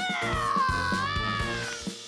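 A long, high-pitched scream let out of the opened scream jar, rising sharply at the start, then held with a slow waver and fading near the end.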